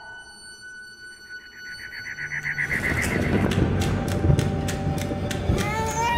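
Horror film trailer score: faint sustained high notes, with a fast pulsing tremolo entering about a second in. From about three seconds in, a louder, dense, clattering texture builds.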